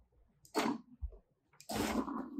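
Steam iron pushed across parchment paper: a short hissing scrape about half a second in, a soft knock near the middle, and a longer scrape near the end.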